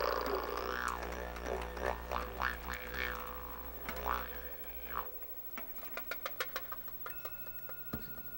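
A low steady drone with sweeping, wah-like overtones that fades away about five seconds in, followed by a quick run of light clicks and a faint steady high tone near the end.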